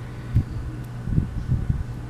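Dull handling bumps from hands working small sandals onto a doll's feet: one sharp thud about half a second in and a few softer ones around a second and a half. A steady low hum runs underneath.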